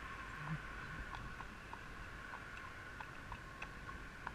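Horse's hooves clip-clopping on a tarmac road, steady hoofbeats about three a second, over a steady background hiss.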